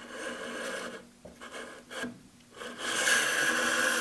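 Wooden clock case rubbing and scraping against a spindle sander's sanding sleeve and table as it is worked around the notch, in uneven strokes with the longest one near the end.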